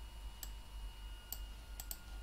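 Computer mouse button clicking four times, the last two close together like a double-click, over a low steady background hum.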